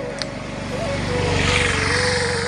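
Road traffic: an engine runs with a steady low pulsing while a passing vehicle, likely the auto-rickshaw coming by, grows louder from about a second in and then eases off. A steady hum-like tone runs underneath.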